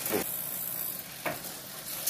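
Mountain bike drivetrain running on a stand as the crank is turned by hand: the chain runs over the Shimano Acera 9-speed cassette and rear derailleur with the rear wheel spinning, a steady hissing whir with a light click about a second in.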